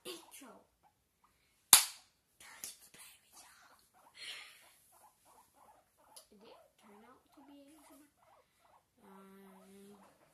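Close-up ASMR mouth sounds into an earbud-cable microphone: soft clicks, smacks and brief murmurs, with one sharp, loud click or pop a little under two seconds in and a short steady hum near the end.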